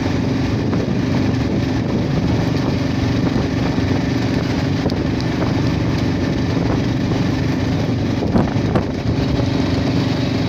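Engine and road noise of a moving vehicle heard from on board: a steady drone with a constant low hum, and a brief knock a little past eight seconds in.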